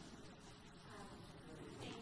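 Near silence: faint hall room tone.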